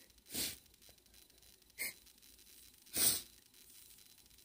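A woman crying: three short sniffles and shaky breaths, the first and last longer than the middle one.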